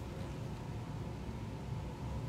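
Steady low background hum of room tone, with no distinct event.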